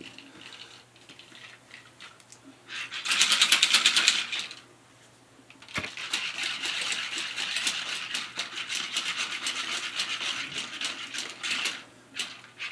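Plastic shaker bottle shaken to mix a scoop of pre-workout powder into water: a loud burst of rapid rattling clicks about three seconds in, a pause with a single sharp click, then a longer, quieter run of rapid rattling until just before the end.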